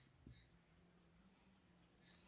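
Near silence with the faint squeak and scratch of a marker writing on a whiteboard in short strokes.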